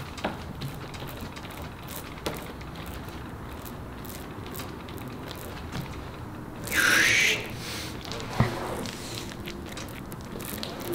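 Small hand tool spreading wet epoxy resin over carbon fibre cloth: quiet rubbing and light ticks of the tool on the cloth. About seven seconds in there is a brief, louder hissing rustle, and shortly after it a single sharp click.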